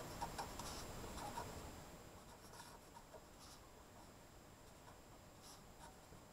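Faint scratching of a pen writing by hand on paper, in short irregular strokes, a little louder in the first two seconds.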